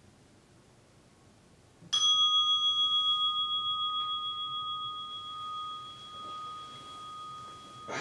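A meditation bell struck once, ringing out with a pulsing waver and slowly fading over several seconds, marking the end of the sitting period. A brief rustle comes near the end.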